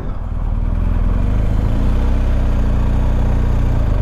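Motorcycle engine running steadily under way, with road and wind noise; the engine note rises a little about a second and a half in as the bike picks up speed.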